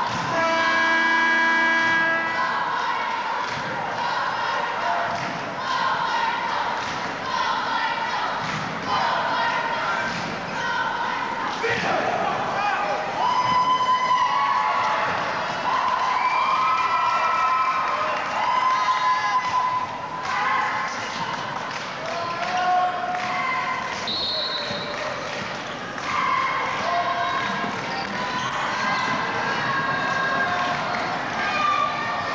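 An arena buzzer sounds one steady tone for about two seconds. Then a basketball is dribbled and bounced on a hardwood court, under the voices of a crowd in a large gym.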